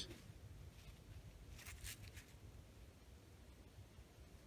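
Near silence: faint outdoor background noise, with a brief faint rustle a little before halfway.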